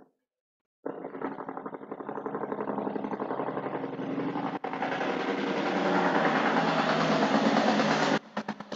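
A motor-driven machine running with a fast, even pulsing, getting louder as it goes, then stopping abruptly, followed by a few fading pulses.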